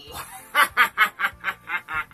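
A person laughing: a quick, even run of short 'ha' bursts, about five a second, starting about half a second in.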